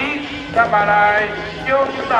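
A voice singing with music, holding a long note about half a second in, over a steady low drone.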